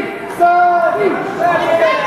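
Wrestling crowd chanting in unison: one held chant call, falling off at its end about a second in, then the crowd breaks into mixed shouting and chatter.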